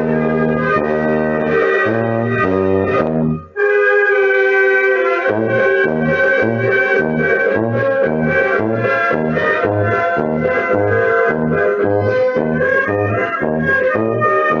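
Brass band music: a march-like tune over a low bass line that sounds on the beat about twice a second. It breaks off briefly about three and a half seconds in, then resumes.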